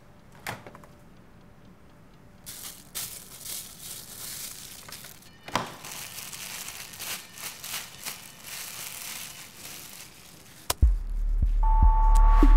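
A single click early on, then rustling and crinkling handling noises with soft knocks. Near the end a sudden hit sets off a loud, low, rising musical swell with a held tone.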